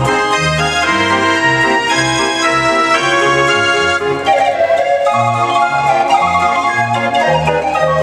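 Dutch street organ (draaiorgel) playing a tune, its bass pipes sounding a regular alternating oom-pah accompaniment under the melody and chords.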